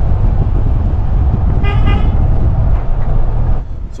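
Toyota FJ Cruiser driving with its side window open: a loud, steady rumble of wind on the microphone and road noise. A brief high tone sounds about halfway through.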